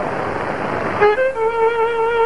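A steady rushing noise for about a second, then a violin starts one long held note a second in.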